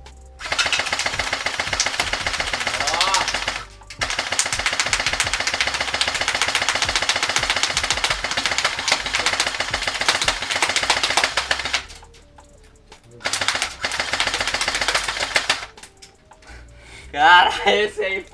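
Airsoft M4 electric rifle firing on full auto in three long bursts of rapid shots, the first about three seconds, the second about eight seconds, the third about two seconds. A voice follows near the end.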